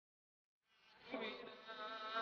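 Near silence, then about two-thirds of a second in a man's voice begins a long, drawn-out chanted note that grows louder.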